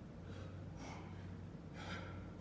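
A man breathing hard in short, forceful puffs from the exertion of weighted pull-ups, about three breaths in two seconds, the last the loudest. A steady low hum runs underneath.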